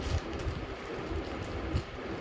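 Plastic courier mailer bag rustling and crinkling as it is handled, with a few soft thumps.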